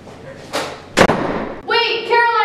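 An interior door slammed shut about a second in, after a softer thud half a second before it.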